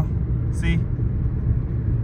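Steady low road and engine rumble inside the cabin of a moving Maruti Brezza at highway speed.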